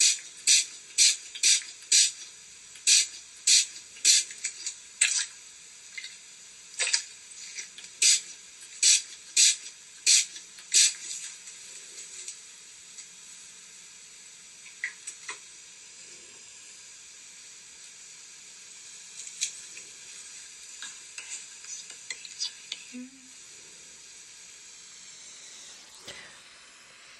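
Hand-made ASMR trigger sounds from a spa role-play: a run of crisp strokes, about two a second, for the first ten seconds or so. After that come softer scattered taps and handling over a steady background hiss.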